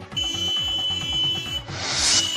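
News-bulletin transition sting: a steady high electronic beep held for about a second and a half over a rhythmic music bed, then a whoosh near the end.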